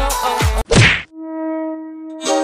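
A pop music backing track with a deep, falling kick-drum beat stops about half a second in. An edited-in transition sound effect follows: a short sharp hit sweeping down in pitch, then a single ringing tone held for about a second.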